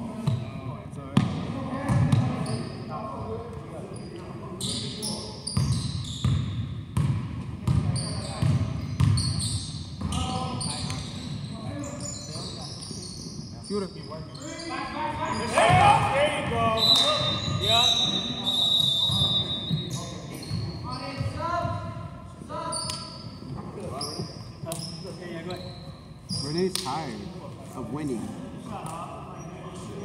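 A basketball bouncing on a hardwood gym floor during play, repeated thuds, among the voices of players, all echoing in a large gym hall.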